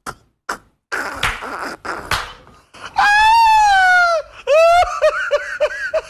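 Human voice laughing breathily, then a loud, long wailing cry about three seconds in that slowly falls in pitch, a short rising cry, and a run of short high laughs.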